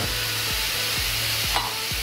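Diced vegetables (onion, carrot, leek, celery and peppers) sizzling steadily in olive oil in a hot pan, with a few faint ticks.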